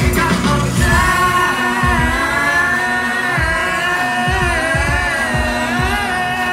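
A live band playing in a stadium, recorded from within the crowd: a long, gliding melodic lead held over a steady kick-drum beat.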